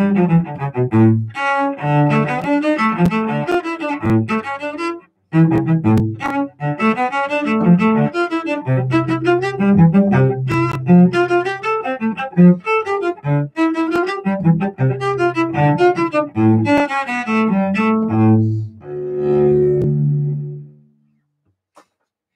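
Solo cello bowed in a lively run of notes, with a brief break about five seconds in. The piece closes near the end on a long held final note that dies away.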